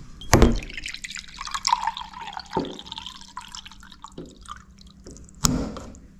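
Water running from the tap of a plastic drinking-water can into a vessel, filling it. A sharp click comes about a third of a second in and another just before the end.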